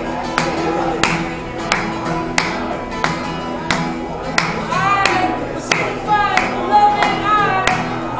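Acoustic guitar strummed with hand claps keeping steady time, about three claps every two seconds. A man's singing voice comes in about five seconds in.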